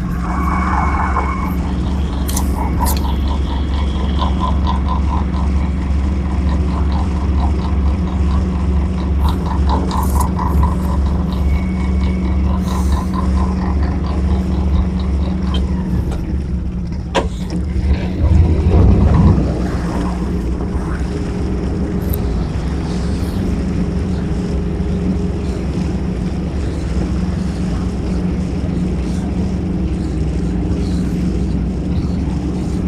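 Sailboat's inboard engine running steadily under way, with cooling water splashing from the wet exhaust outlet at the stern. About 17 seconds in there is a sharp clunk, then a brief louder surge as the engine is put in reverse to stop the boat, after which it settles to a steady run again.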